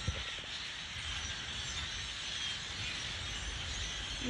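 A large flock of dark songbirds calling all at once, a steady, even chattering din of many voices blended together, with a low rumble underneath.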